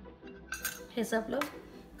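Metal spoon clinking against stainless-steel bowls, several sharp clinks starting about half a second in.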